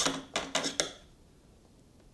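Scissors picked up off a tabletop: a short clatter of clicks and knocks in the first second, mixed with a woman's voice.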